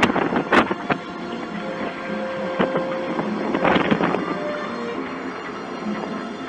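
Background music with held tones, overlaid by bursts of wind noise on the microphone, strongest at the start and again around four seconds in.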